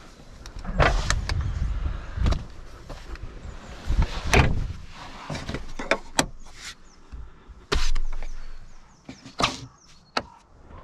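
A string of clicks, knocks and thumps from a BMW iX's rear cabin fittings being handled: the rear seat, the rear roof lights and a clothing hook.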